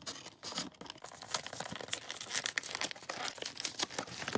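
Packaging of a Pokémon trading-card poster collection box being torn open by hand: a steady run of crinkling and tearing crackles.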